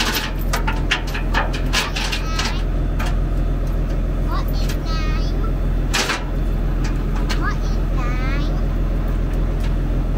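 Vehicle engine idling steadily, with sharp metallic clicks and clinks from a chain being handled, mostly in the first couple of seconds and again about six seconds in.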